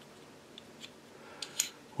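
Faint metal-on-metal handling of a 1911 pistol's slide, barrel and barrel bushing as the bushing is turned for removal during field stripping, with a few small clicks in the second half and the sharpest shortly before the end.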